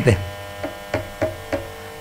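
Steady electrical mains hum, a buzz with many overtones, with a few faint short sounds in the middle.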